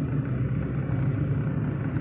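Steady low drone of a moving car heard from inside the cabin: engine and tyre noise while cruising along the road.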